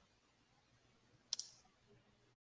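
Computer keyboard keystrokes: one sharp key click about two-thirds of the way in, with a couple of faint taps around it, against near silence.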